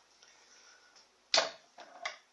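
Faint room tone, broken about a second and a half in by a single sharp click of something hard being handled, with a fainter tap just before the end.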